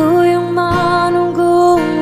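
Acoustic-guitar-backed pop ballad with a female voice holding one long note, which steps down in pitch near the end.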